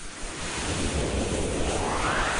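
Whoosh sound effect of an animated title sequence: a loud rush of noise over a low rumble, with a sweep rising in pitch in the second half.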